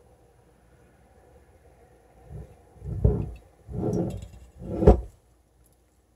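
A person tasting from a spoon, making a few low, closed-mouth "mm"-like murmurs a couple of seconds in. A short, sharp knock follows near the end.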